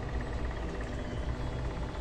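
A steady low mechanical hum with a faint hiss, unchanging and with no distinct events.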